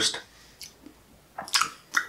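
A quiet pause in a man's talk, broken about a second and a half in by a short mouth sound, a lip smack and intake of breath, just before he speaks again.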